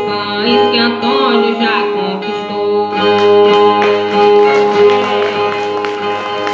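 Two Brazilian ten-string violas playing an instrumental interlude between sung verses of a repente, with sharper strummed chords from about halfway.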